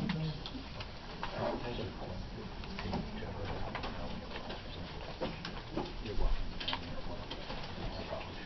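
Hearing-room background: low murmured voices with rustling paper and a few scattered knocks and clicks over a steady low room hum.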